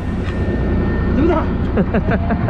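Fishing boat's engine running with a steady low rumble, under a person laughing about a second in.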